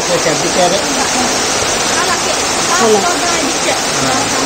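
A steady, loud rushing noise, with people's voices talking faintly underneath it.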